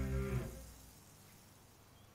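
A low held musical note, the tail of the cartoon score's sting, fading out within the first second, then near silence.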